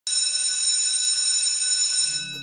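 A steady, high-pitched electronic beep, starting abruptly and held unchanged for about two seconds.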